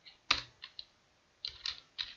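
Computer keyboard being typed on: one sharp keystroke, a couple of lighter ones, a short pause, then a quick run of keystrokes near the end.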